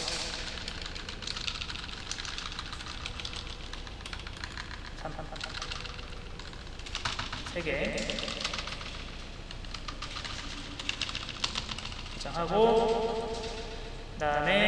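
Computer keyboard typing: quick, irregular keystrokes with a few louder clicks.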